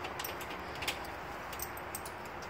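Low, steady outdoor background noise with a few faint, brief clicks, about a second in and again near the end.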